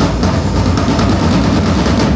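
Live drum line of snare and bass drums played with sticks: a dense run of rapid strokes, with a deep steady bass underneath.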